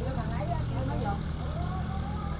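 A boat engine running steadily, a low even hum.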